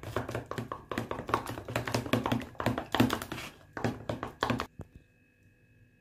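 Metal spoon stirring a thick paste in a plastic tub, making quick taps and scrapes against the sides. The stirring stops about a second before the end.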